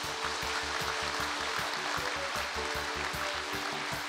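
A seated audience applauding, with background music with a steady beat and held tones underneath.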